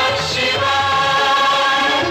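Devotional closing-theme music with a choir singing long held notes over a low part that moves in steps.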